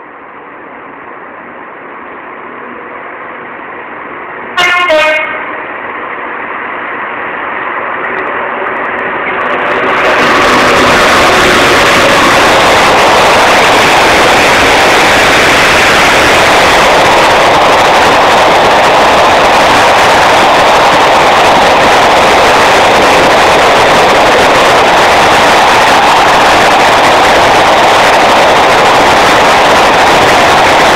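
Class 66 diesel freight locomotive approaching at speed, its noise building, with one short horn blast that drops in pitch at its end about five seconds in. From about ten seconds in comes the loud, steady rush of the locomotive and its car-carrier wagons passing close by at speed.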